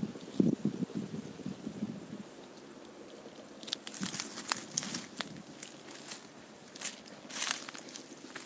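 Dry leaves and brush crackling and crunching in irregular sharp bursts from about halfway through, with a few low, dull bumps near the start.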